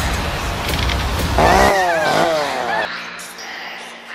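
A loud, low, motor-like rumble that cuts off abruptly a little under two seconds in. Overlapping its end come two high vocal cries falling in pitch, a shriek or cackle.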